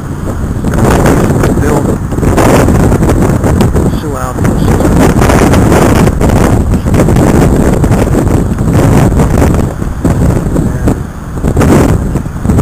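Strong wind buffeting the microphone in a loud rumble that swells and dips with the gusts, with road traffic mixed in underneath.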